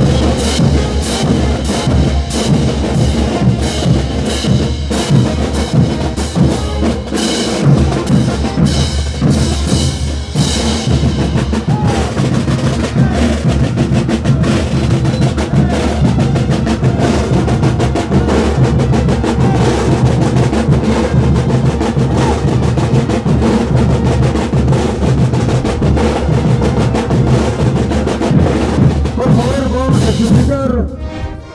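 A parade band's percussion section playing continuously: rapid crash-cymbal strikes with snare drums and bass drums, over steady held notes from the rest of the band.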